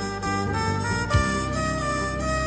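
Turkish pop song playing: a held, smooth lead melody over bass and drums, with a sharp drum hit a little after one second in.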